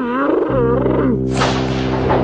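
Two cartoon larva characters screaming with a wobbling, wavering pitch over sustained background music chords. A harsh, raspy roar breaks in about one and a half seconds in.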